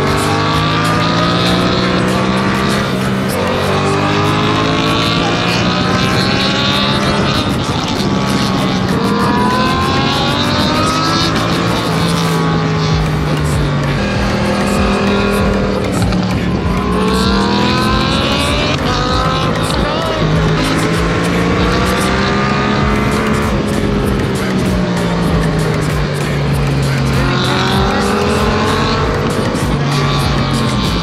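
Yamaha MT-07's 689 cc parallel-twin engine under way, its pitch climbing as it revs and dropping back at each shift or roll-off, over and over.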